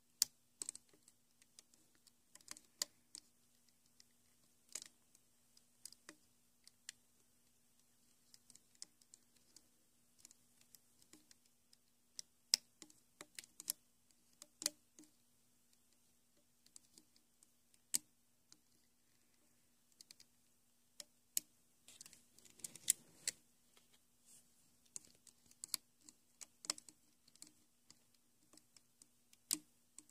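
Sparse, irregular light clicks and taps of a metal loom hook against the plastic pegs and stretched rubber bands of a Rainbow Loom as bands are hooked and looped, with a brief rustle of handling a little past the middle. A faint steady low hum runs underneath.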